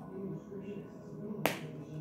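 A single sharp snap from the hands about a second and a half in, over faint, steady background music.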